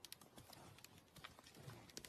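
Faint, irregular hoofsteps and small twig snaps of a bull moose walking through forest undergrowth.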